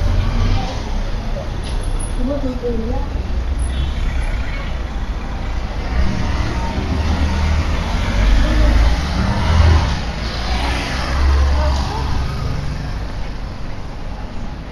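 Town-centre road traffic: vehicles running and passing with a steady low rumble that swells between about six and twelve seconds in, with indistinct voices of passers-by.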